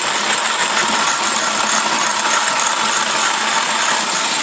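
Corona mill driven by a cordless drill motor, running with a steady, loud mechanical noise.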